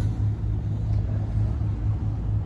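Motor yacht's engine running steadily under way, a low, even rumble.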